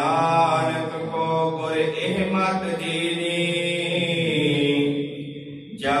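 A man chanting a Sikh hymn (Gurbani shabad) in long, drawn-out held notes, with a brief drop in level shortly before the end.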